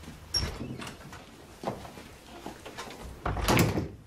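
Door sounds: a sharp latch click with a brief squeak about a third of a second in, a few lighter knocks, then a louder bang near the end as the door shuts.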